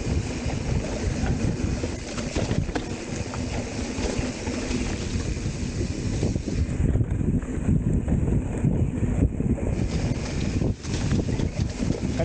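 Loud, steady low rumbling noise with a brief drop near the end.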